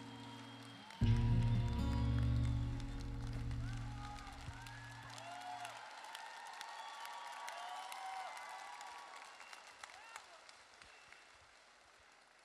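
Audience applauding and cheering, with high calls from the crowd, after a song ends. The backing track's final chord with deep bass comes in about a second in, is held for several seconds and stops, and the applause then gradually dies away.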